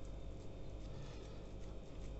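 Faint soft patting and squishing as fingers press coarsely grated beetroot down onto a salted chum salmon fillet.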